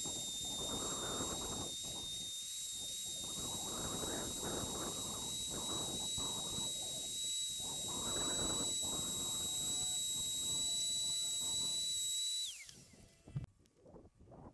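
HVLP turbine spray system running with a steady high whine and hiss, with a rushing of air from the spray gun that comes and goes as the finish is sprayed. Near the end the whine glides down in pitch as the turbine is switched off, and a single knock follows.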